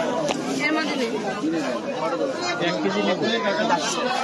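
Several people talking at once in overlapping chatter, with no single voice standing out: the hubbub of a busy market stall.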